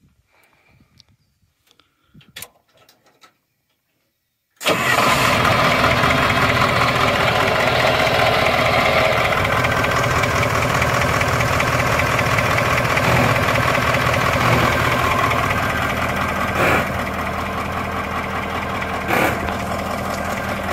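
Caterpillar 3208 V8 diesel engine. After a few quiet seconds with faint clicks at the dash switches, the engine comes in abruptly about four and a half seconds in. It then runs loud and steady just after start-up, easing slightly near the end.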